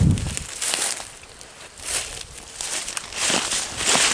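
Footsteps crunching through dry oak leaf litter at a walking pace, about six steps, softer around the middle.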